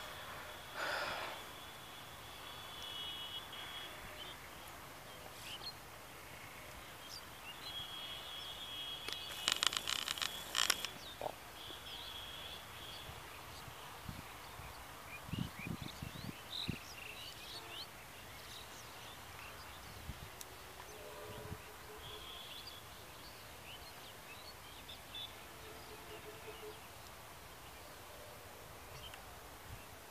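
Quiet rural outdoor ambience with scattered high bird calls coming and going. About ten seconds in there is a brief, louder rasping noise, and a few soft low thumps follow a few seconds later.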